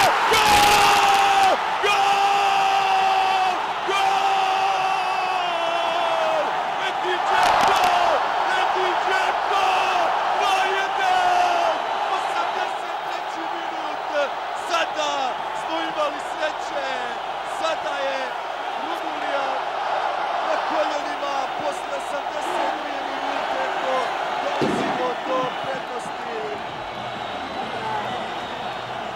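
Stadium crowd cheering a goal, under a TV commentator's long drawn-out shout of "gol" that sags slightly in pitch over the first several seconds, followed by more short excited shouts.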